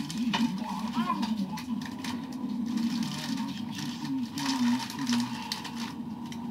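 Muffled, indistinct voices in a small room, with scattered light clicks and knocks of handling.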